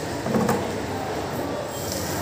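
Many silkworms chewing mulberry leaves: a steady, dense crackle, with a brief louder sound about half a second in.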